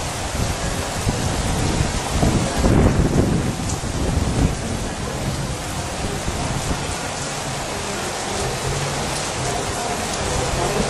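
Heavy rain falling in a steady hiss, with a louder low rumble from about two to four and a half seconds in.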